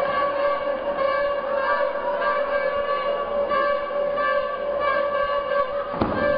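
A long, steady horn-like tone held at one pitch, over a noisy background.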